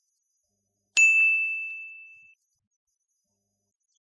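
A single bright ding sound effect, struck about a second in and ringing out over about a second and a half.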